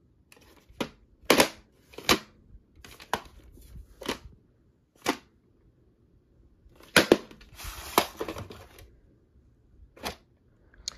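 A VHS cassette and its cardboard sleeve being handled: sharp clicks and taps about once a second, then a longer scraping rustle near the end as the plastic cassette slides out of the sleeve.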